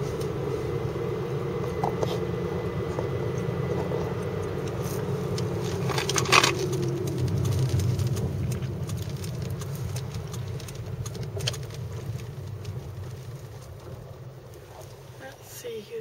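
Car engine and road noise heard from inside the cabin while driving, a steady low rumble. There is one short, louder noise about six seconds in, and the noise dies down over the last few seconds as the car slows.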